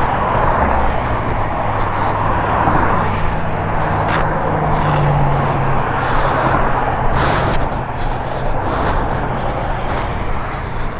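Motorcycle engine running steadily at low speed, with wind and freeway traffic noise over it; the engine note lifts a little for a second or two about four seconds in.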